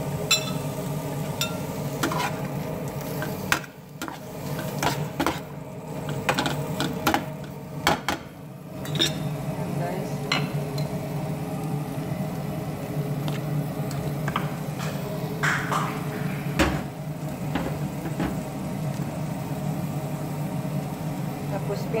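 A utensil clinking and scraping against a metal pan as shrimp are stirred and tossed, in scattered sharp knocks over a steady low hum.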